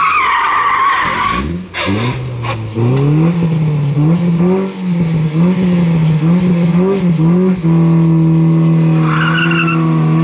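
Renault Mégane coupé rally car's tyres squealing through a hairpin. Its engine then pulls away, the revs rising and dropping repeatedly before holding steady, with a second short tyre squeal near the end.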